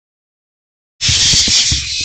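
Barn owlets' loud, continuous hissing begging screech, starting abruptly about a second in after silence; it is the owlets begging for food as prey is delivered. Low scuffling thumps from the birds moving about the nest box run beneath it.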